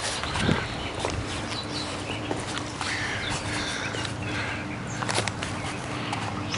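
Outdoor ambience: birds calling now and then over a steady background hiss, with a few sharp clicks from a handheld camera being handled.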